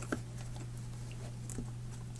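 A few faint clicks and light rubbing as fingers work the rubber lip of a Czech M10 gas mask around its cheek filter intake, over a steady low hum.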